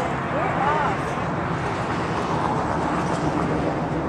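Steady low rumble of outdoor background noise, with a faint voice heard briefly in the first second.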